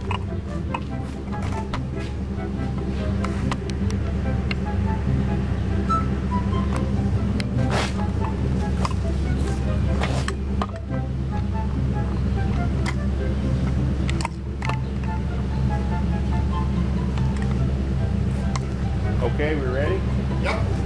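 A truck engine idling with a steady low drone, with a few sharp knocks and clanks.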